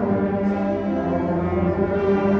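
Sixth-grade concert band of brass and woodwinds playing held chords, with low brass notes strong underneath and the chords changing every half second or so.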